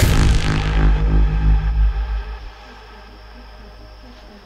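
Electronic drum and bass track: the drums and high end fade out over the first second or so while a heavy sub-bass holds, then about two and a half seconds in the bass drops away, leaving a quiet sustained pad.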